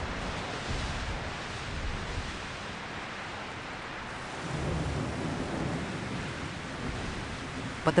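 Thunderstorm: steady hiss of heavy rain and gusting wind, with low rumbles of thunder about a second in and again about halfway through.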